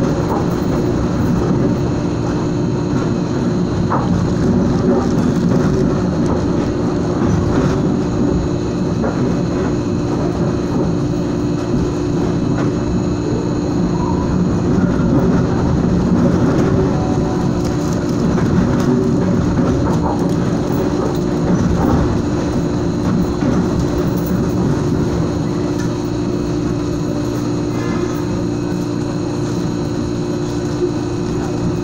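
Interior running noise of a SuperVia air-conditioned suburban electric train in motion: a steady, loud rumble of wheels on rail with a constant hum underneath.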